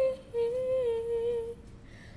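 A young girl singing unaccompanied, holding one note that wavers slightly in pitch and ends about a second and a half in.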